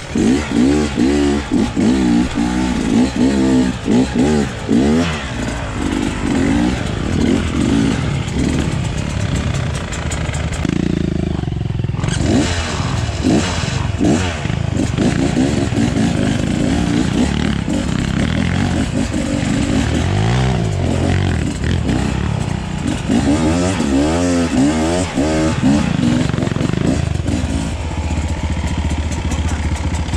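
Dirt bike engine on a rough trail climb, the throttle opened and closed again and again so the pitch keeps rising and falling. It eases off briefly about eleven seconds in and settles to a steadier, lower running note near the end.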